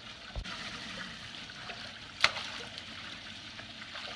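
Steady running water from a hot tub's spillover, with one sharp click a little past halfway. Water splashes near the end as a thrown golf ball is caught in the tub.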